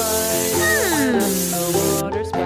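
A cartoon spray-can sound effect: aerosol spray paint hissing, starting suddenly and lasting about two seconds, with a falling whistle-like glide in the middle. Cheerful children's background music plays underneath.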